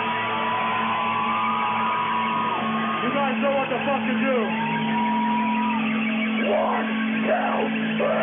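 Live metal band on stage sustaining low droning guitar notes under high whining tones that bend and glide up and down, with short shouted yells in the last two seconds.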